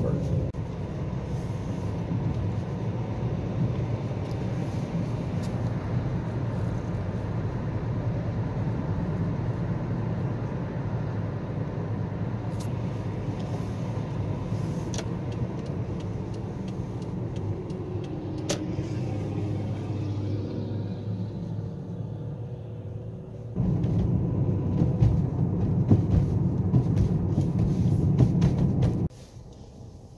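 Car cabin noise while driving: a steady low rumble of engine and tyres on the road. It gets suddenly louder about three-quarters of the way in, then drops off abruptly shortly before the end.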